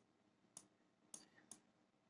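Near silence with three faint, sharp clicks spread unevenly through it, the kind made by a pointing device while a word is handwritten on screen.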